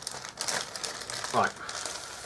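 Clear plastic bag crinkling and rustling as a sprue of plastic model-kit parts is pulled out of it.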